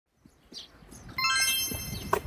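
Faint bird chirps, then about a second in a bright, shimmering chime of many high ringing tones starts and holds.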